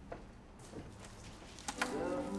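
A few faint clicks and light knocks over a low steady hum, with two sharper clicks close together near the end.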